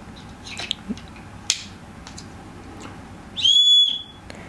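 Whistle on a paracord survival bracelet blown once near the end: a short, shrill, steady blast about half a second long. Before it, a few light clicks from handling the bracelet.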